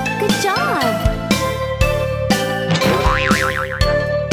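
Children's cartoon background music with a steady beat. About half a second in, a springy cartoon sound bends up and down in pitch, and around three seconds in a fast wavering high tone comes in.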